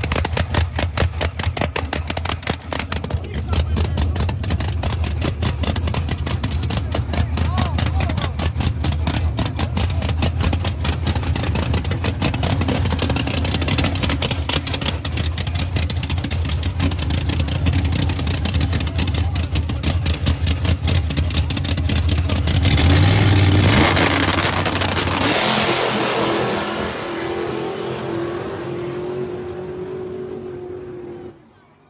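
Drag-race cars idling with a rapid, even, lumpy chop for about 22 seconds, then a loud launch about 23 seconds in as the cars accelerate away, their sound fading down the track.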